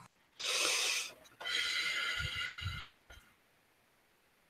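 A man breathing deeply and forcefully close to the microphone: two long breaths, the second longer, as he prepares to go into trance for channeling.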